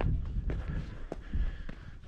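Footsteps of shoes stepping and scuffing on bare sandstone slickrock while climbing a steep slope: a few irregular, sharp steps over a low steady rumble.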